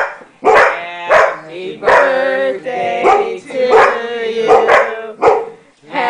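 Dogs barking about once a second, each bark drawn out into a short, howl-like tone, while begging for biscuit treats held up above them.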